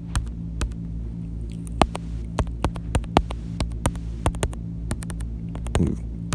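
Typing on a smartphone's on-screen keyboard: a string of irregular light taps, several a second, over a steady low electrical hum.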